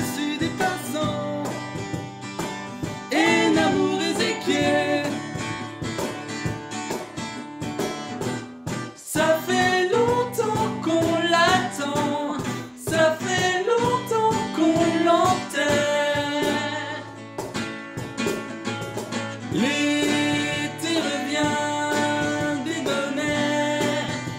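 Acoustic guitar strumming chords with two male voices singing together in harmony, over a cajon beat.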